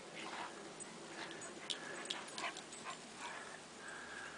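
Two dogs playing, with faint, short whimpers and scattered light scuffling sounds.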